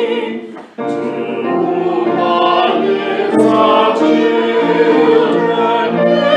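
A recorded choir singing sacred choral music, in the style of a virtual choir. The sound dips away and then cuts back in abruptly just under a second in.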